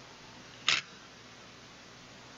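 A single short, crisp rustle of thin book paper, about a second in, as a page of a law book is turned.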